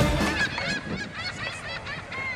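Birds calling outdoors: a run of short, repeated calls, while music fades out in the first half second.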